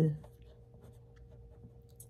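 Faint scratching and rubbing of a hand moving over a sheet of paper, over a thin steady hum; a spoken word trails off at the very start.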